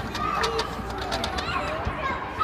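Background babble of small children's voices and adult chatter in a busy play area, with a few light taps in the first second.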